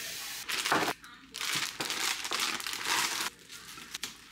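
Plastic and tissue-paper flower wrapping crinkling as it is handled and pulled open, in irregular bursts that stop shortly before the end.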